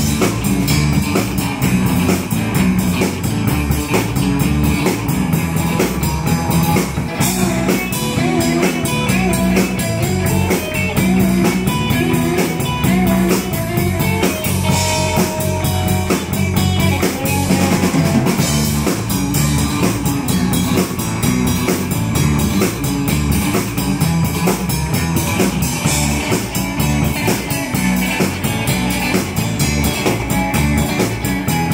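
Live rock band playing: a red Telecaster-style electric guitar, electric bass and a drum kit, with a steady driving beat.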